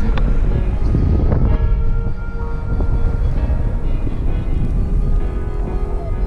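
Airflow buffeting a paraglider pilot's camera microphone in flight: a loud, steady, rough low rumble. Music plays faintly underneath.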